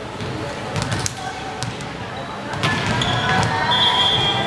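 Echoing sports-hall ambience during a volleyball match: a volleyball thuds on the wooden floor several times over a murmur of players' voices. Near the end a short, steady, high-pitched referee's whistle sounds.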